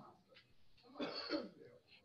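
A short throat clearing about a second in, after near quiet.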